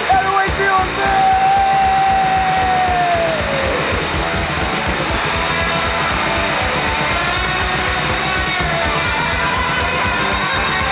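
Hardcore punk band recording with guitar, with one long held note about a second in that slides down in pitch about three and a half seconds in before the band carries on.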